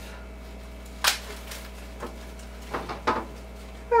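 Several short knocks and taps of a plastic cutting board, broccoli florets and a knife against a kitchen countertop, the loudest about a second in and a quick cluster of three or four near the end.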